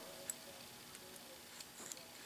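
Faint handling of two pen-sized metal chip pick-up tools in the hands: a soft click about a quarter second in and a couple more near the end, over quiet room tone.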